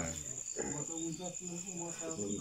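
Crickets chirring at night: one steady, high-pitched trill runs throughout, with faint voices talking under it.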